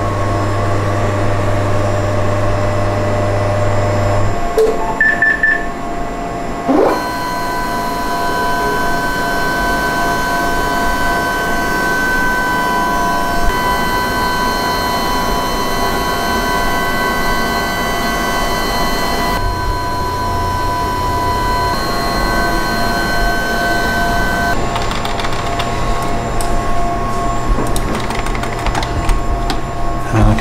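Hologic DEXA body scanner's motors whining steadily as the table and overhead scanning arm move through a whole-body scan. The pitch changes in steps a few times as the motion changes, with a quick rising whine about seven seconds in.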